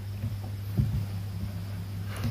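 Room tone: a steady low electrical-sounding hum under faint background hiss, with one soft tap a little under a second in.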